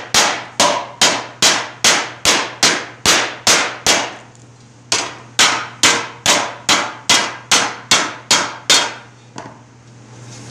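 Hammer blows on a circular 18-gauge brass sheet resting on a wooden stump, sinking a small dome into the centre of the disc: steady strikes about three a second, each with a short metallic ring. The hammering pauses for about a second near the middle, resumes, and ends with one lighter tap near the end.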